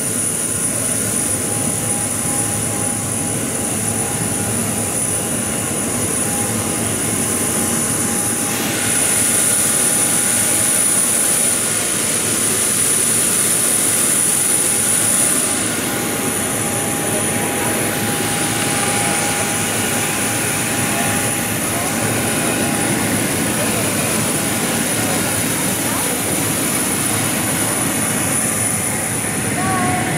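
Aircraft auxiliary power unit running on the ramp: a steady turbine rush with a thin high whine, which grows louder for several seconds around the middle.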